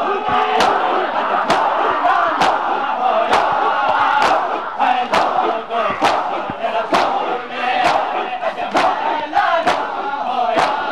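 A large crowd of mourners beating their chests in unison (matam), a sharp slap about once a second, over many men's voices chanting and shouting together.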